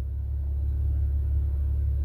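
A steady low rumble with faint hiss and no distinct events.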